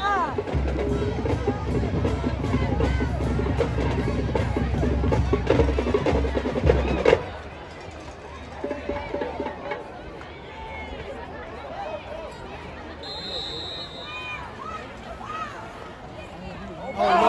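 Drums play a loud rhythm with heavy bass-drum beats over crowd voices, then stop abruptly about seven seconds in. After that there is quieter crowd chatter, with a short high whistle blast near the end.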